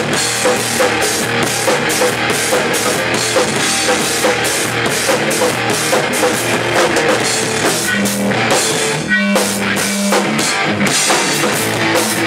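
Live amateur rock band playing loud in a room: drum kit with cymbals driving a steady beat under distorted electric guitars. About nine seconds in, the drums ease off briefly under a held note before the full band comes back.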